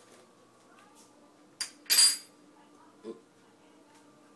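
A metal spoon clinking against kitchen dishes: a sharp click about one and a half seconds in, a louder, ringing clatter just after, and a softer knock near the end.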